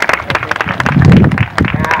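Spectators applauding a player's introduction, with many separate hand claps. A low rumble about a second in is the loudest moment, and a shouted "yeah" comes near the end.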